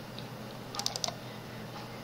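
A quick cluster of about five light clicks from a computer being worked by hand, over a faint room hiss.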